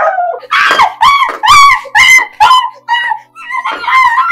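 A woman screaming in repeated short, high-pitched cries, about two or three a second: cries of pain and distress while she is being beaten.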